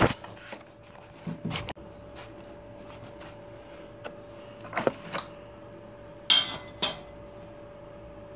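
A few scattered metallic clicks and knocks from handling a steel linear rail and its bolted carriage plate, the sharpest two clinks coming about six seconds in.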